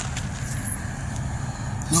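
Steady low rumble with an even hiss behind it, unchanged throughout, like a running motor or fan in the room.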